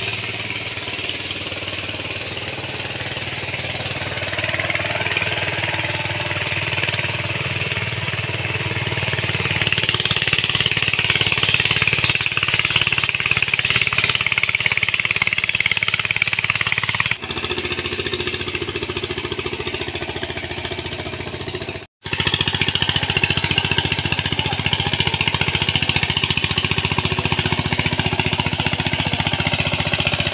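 Walk-behind power tiller's single-cylinder diesel engine running steadily, working a flooded paddy field. The sound changes abruptly about two-thirds of the way through and drops out for an instant a few seconds later.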